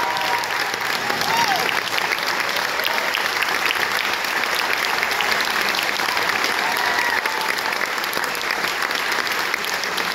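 Audience applauding steadily, a dense patter of many hands clapping, with a couple of brief voices calling out over it.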